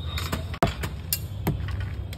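Kitchen work noise while dough is portioned by hand on a wooden table: five or six sharp knocks and clicks at irregular intervals over a steady low rumble.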